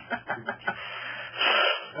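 A man's quick staccato chuckling, then a breathy, hissing exhale about a second and a half in.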